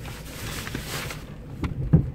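Car running at low speed, heard from inside the cabin as a steady low hum, with two short clicks near the end, the second one louder.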